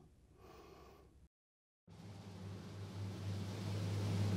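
Faint room tone, then a half-second of dead silence at an edit, then a low steady hum that grows louder over the last two seconds and runs on into the opening of background music.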